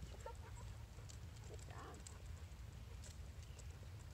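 Faint footsteps of a person and a dog walking on asphalt, heard as a few light clicks and taps over a low steady outdoor rumble.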